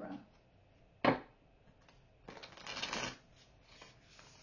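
A deck of tarot cards being shuffled by hand. A single sharp snap comes about a second in, then the cards rattle as they riffle for about a second near the middle.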